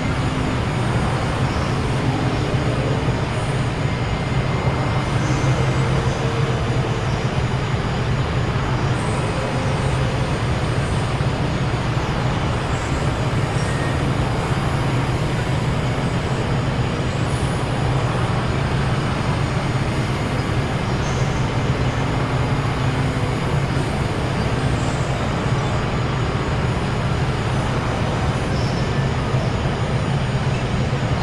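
Experimental synthesizer noise drone: a dense, steady wash of noise over a strong low hum, with faint short tones appearing and fading above it.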